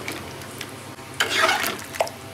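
A metal ladle stirring a large metal pot of wet meat-and-potato curry with rice for biryani. One loud wet scraping stir stroke comes about a second in, over a low steady background.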